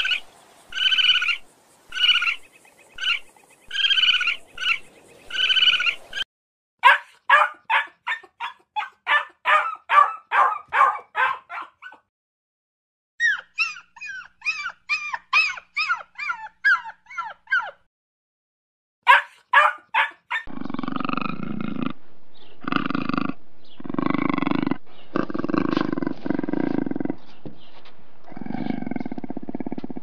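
A run of animal calls in turn: short squeaky calls from a red panda repeated about every half second, then quick runs of high yips and whimpers from a small dog, then a puma snarling in a string of loud bursts about a second apart.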